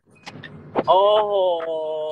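A person's long, drawn-out exclamation "โอ้โห" (Thai for "wow"), held on nearly one pitch for about two seconds and bending slightly before it stops.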